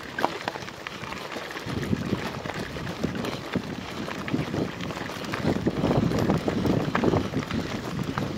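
Gravel crunching steadily under movement across a loose gravel surface, with a low rumble, like wind on the microphone, that grows stronger about two seconds in and again past the middle.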